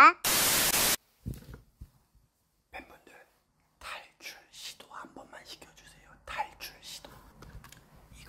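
A loud burst of static hiss, under a second long, near the start, then faint whispering.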